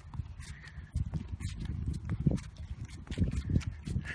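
Footsteps walking along a sidewalk: a run of low, muffled knocks, several a second.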